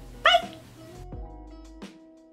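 Outro music: a brief high yelp-like call near the start, then steady held tones over a beat of low thuds from about a second in.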